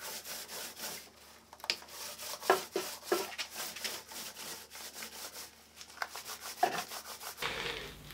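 Small paint roller rolling yellow paint across a wooden board: a sticky, crackling rub in repeated back-and-forth strokes, several a second.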